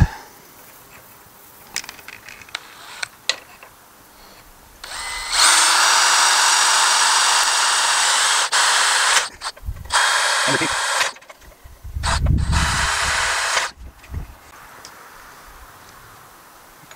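Cordless drill boring a hole through a fiberglass ladder rail: one steady run of about four seconds, a short burst, then a second run of a second and a half. A few light clicks come before the drilling starts.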